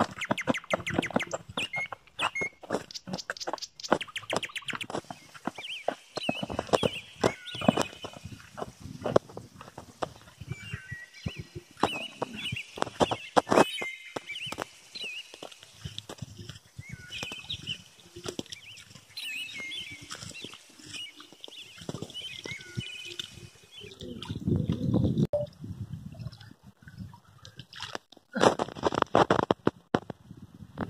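Birds chirping over a scatter of short scuffs and knocks, with two louder bursts of noise near the end.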